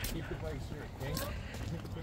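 Faint distant voices over a low, steady background rumble, in a lull between loud shouts of encouragement.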